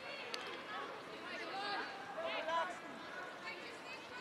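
Footballers' voices shouting and calling to one another on the pitch, heard faintly over an open stadium's background.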